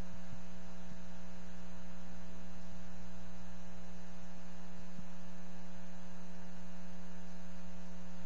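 Steady electrical mains hum on the audio line: a constant buzz with a stack of even overtones, holding at one level throughout.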